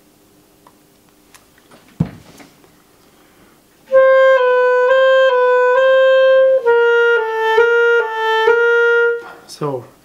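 A knock about two seconds in, then a Schwenk & Seggelke Model 2000 German-system clarinet played for about five seconds: it alternates between two neighbouring notes, then between a slightly lower pair. It is a test of the freshly adjusted pinky-key screws, and the keys now work.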